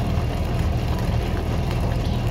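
A steady low mechanical hum at an even, fairly loud level.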